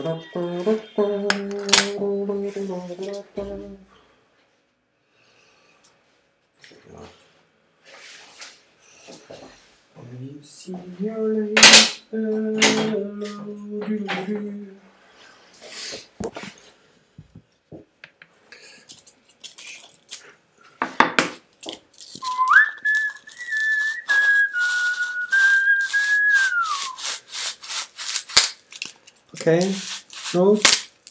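A man hums two long low notes, one near the start and one in the middle. About two-thirds of the way through he whistles a short, wavering tune. Near the end comes a rapid scratchy rubbing as a drilled styrofoam block is handled.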